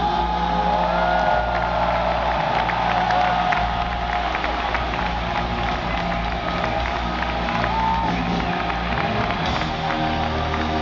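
Live hard rock band with electric guitars and drums playing at full volume, long notes held over drum and cymbal hits, while a large arena crowd cheers.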